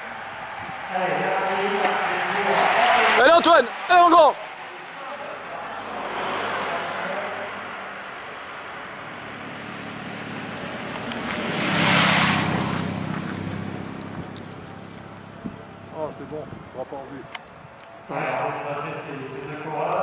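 Roadside voices shouting, loudest about three to four seconds in, then a car passing close with a rush of noise that swells and fades about twelve seconds in; more voices near the end.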